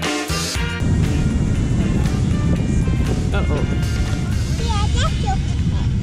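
Background music stops about a second in. After that comes a steady low rumble of wind buffeting the camera microphone outdoors on a beach, with a child's voice a few times in the second half.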